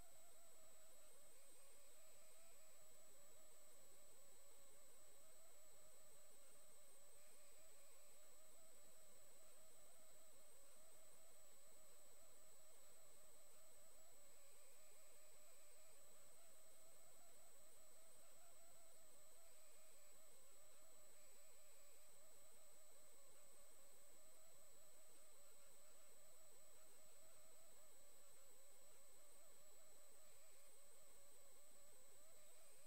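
Near silence: a faint, steady high-pitched electronic whine over low hiss, the recording's own noise floor.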